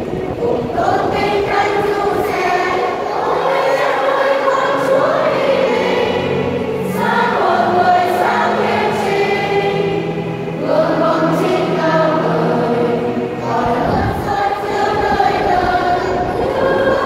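Women's church choir singing a hymn together in unison phrases of held notes, with short breaks between phrases.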